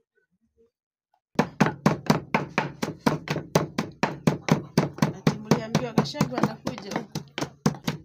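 Wooden pestle pounding garlic in a wooden mortar: a rapid, steady run of thuds, about four a second, starting a little over a second in.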